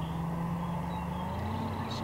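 Steady low hum of a distant engine, its pitch rising slightly about a second and a half in.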